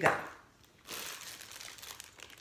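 Clear plastic bag crinkling as it is handled and pulled off a ceramic warmer, a steady rustle starting about a second in.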